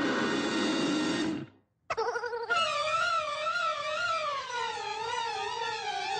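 Orchestral film score: a loud, full chord for about a second and a half, a brief break, then violins playing a wavering line that slowly falls in pitch.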